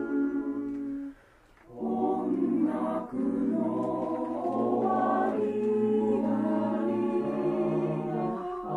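Mixed four-part (SATB) choir singing in Japanese. It holds sustained chords, breaks off for a short rest about a second in, then comes back in and sings on.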